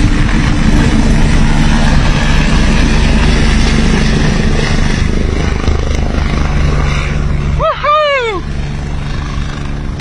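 Helicopter rotor and turbine running loud and steady as the aircraft flies away, slowly getting quieter. Near the end a person cries out once, the voice rising and then falling.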